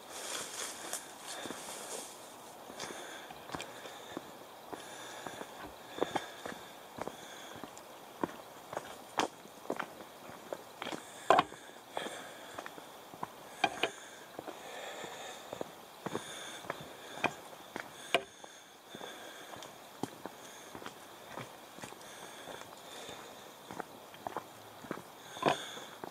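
Footsteps of a person walking along a dirt forest trail scattered with fallen leaves: a run of irregular crunching footfalls.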